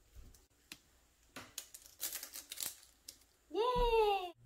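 Small pieces of paper being crumpled by hand into tiny balls: a scatter of short, sharp crinkles, busiest a couple of seconds in. Near the end a child cheers "Yay!"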